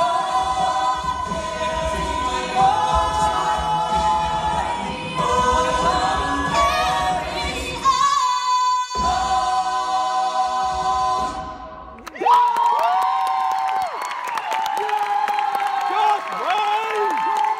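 Mixed-voice a cappella group singing through stage microphones, with a low vocal bass pulse under the harmonies that drops out briefly about halfway through. The song ends about three quarters of the way in, and audience cheering and applause follow.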